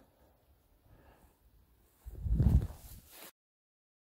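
A low rumble of wind buffeting the phone's microphone for about a second, about two seconds in, after which the sound cuts off abruptly to silence.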